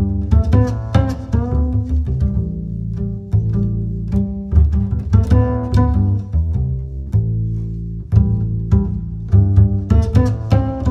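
Background music: short plucked string notes over a sustained low bass line, with a melody that shifts pitch.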